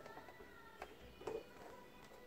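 Faint music starting to play from the cassette boombox's speakers, with a light click from its controls about a second in.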